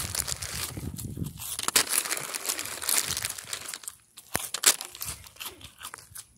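Plastic cereal bag crinkling and rustling as a gloved hand rummages through the loose cereal rings inside, in quick irregular crackles with a short pause a little past halfway.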